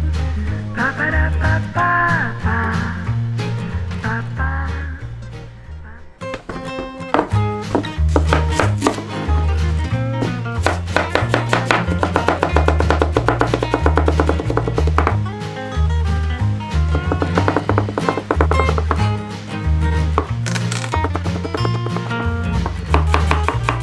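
Background music with a steady bass beat throughout. From about seven seconds in, a chef's knife chops rapidly on a cutting board, cutting carrot into thin strips.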